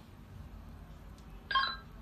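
Short electronic beep from a Sunyuto SV100 DMR walkie-talkie, a few steady tones together lasting about a third of a second, starting suddenly about one and a half seconds in. Before it there is only a faint low room hum.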